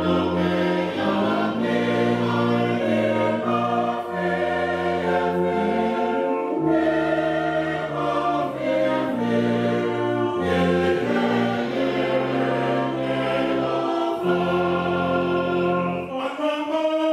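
Church congregation singing a slow hymn as a choir in harmony, accompanied by a brass band of cornets and tuba, with sustained chords changing every second or two.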